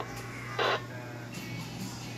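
A steady low hum, with a short burst of packet radio data from the VHF radio's speaker about half a second in, part of a Winlink message being received.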